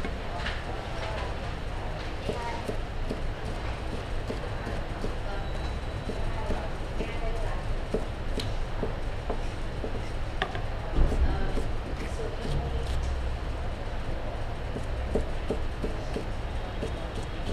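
Chef's knife (a cleaver) slicing bell peppers on a cutting board: a run of irregular knocks of the blade on the board, with one heavier thump about eleven seconds in.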